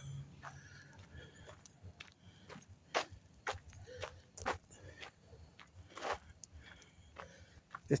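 A person's footsteps while walking, about two steps a second.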